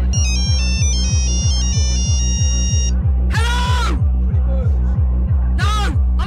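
Fast dance track from a DJ mix: a loud, even kick drum at about three beats a second. A high, stepped synth melody runs over it for the first half. Short pitched vocal samples come in a little past the middle and again at the end.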